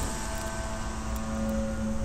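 Disposable butane lighter's flame burning with a steady soft hiss held close to the ear, over a low sustained drone.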